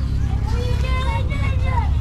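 People talking among market stalls, one higher voice standing out in the second half, over a steady low rumble.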